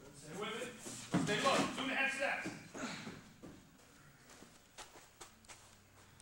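A man's voice talking for the first half, with no words clear enough to transcribe. It is followed by a quieter stretch with a few faint clicks.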